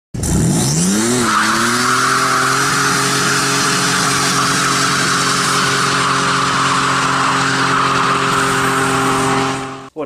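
Turbocharged 3.9-litre Magnum V6 in a Dodge Dakota pickup revving up in the first second and then held at steady high revs while the rear tyres spin in a burnout, with a continuous tyre squeal over it. The sound fades out just before the end.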